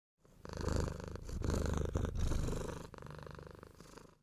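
A domestic cat purring in four long stretches, the last one quieter.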